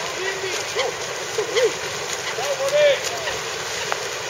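Outdoor ambience of a lake swimming race: a steady hiss of wind and splashing water, with several short faint calls rising and falling over it.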